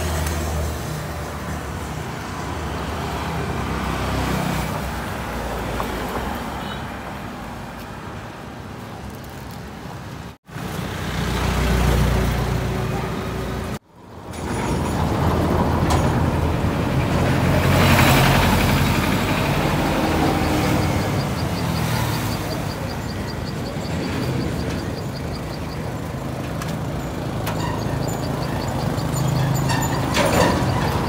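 Roadside traffic noise: vehicles running past with a low engine rumble, one passing loudest about eighteen seconds in, and voices in the background. The sound drops out briefly twice, about ten and fourteen seconds in.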